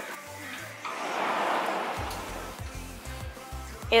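A soft rushing noise swells and fades over the first half, as a tall wooden garage door leaf is swung open, then background music with a low bass line comes up about halfway through.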